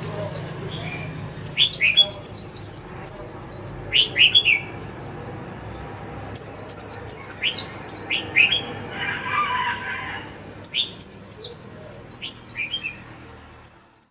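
White-eye calling: quick runs of high, thin chirps, each note sliding down in pitch, three to six notes to a run, repeated again and again with short pauses.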